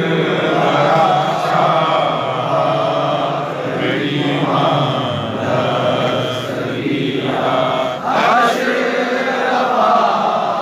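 Men chanting a devotional Urdu tarana together in long held notes, led by one voice singing into a microphone.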